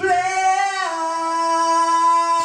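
A man singing live, holding one long note in a high voice that steps down in pitch just under a second in and is then held steady.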